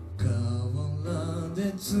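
Live solo performance: a man singing over an acoustic guitar. The vocal line comes in about a quarter second in and carries on over the held guitar chords.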